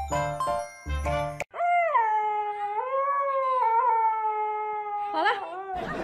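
Chiming music, then a puppy's long howl of about four seconds that wavers in pitch and ends in a few quick rising and falling cries. Just before the end a hair dryer starts blowing.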